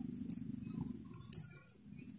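Faint low rumble of room noise that fades away, with one short sharp click a little past halfway.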